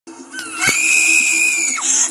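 A woman screaming: one long, high scream starting about half a second in and falling away just before the end, with a sharp click as it begins.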